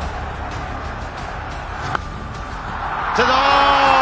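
Stadium crowd noise under a cricket broadcast, with a single sharp crack of bat striking ball about two seconds in. The crowd swells after the shot, and a loud held pitched sound comes in near the end as the ball runs away for four.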